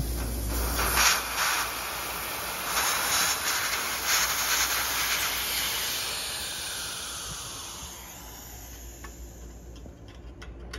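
Pressurised nitrogen hissing out of an air-conditioner's refrigerant lines at the service valve, surging a few times in the first seconds. It tapers off over the last few seconds as the pressure bleeds down.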